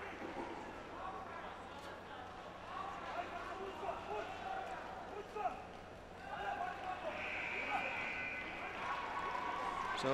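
Faint, indistinct voices and murmur in a large sports hall over a steady low hum, with a single short knock about five and a half seconds in.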